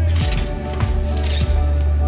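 Background music, with a metal baking sheet scraping out along an oven rack and parchment paper rustling in two short bursts, one near the start and one about a second in.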